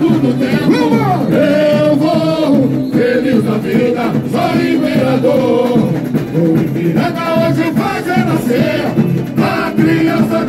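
Samba-enredo sung live through microphones by a group of lead singers over the samba school's accompanying music, with voices joining in unison.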